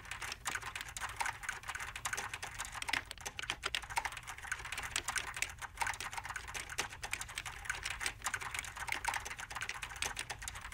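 Many laptop keyboards typed on at once, a dense, irregular clatter of key clicks.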